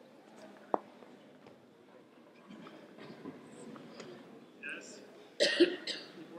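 A single sharp click about a second in, then faint voices, and a person's loud cough near the end.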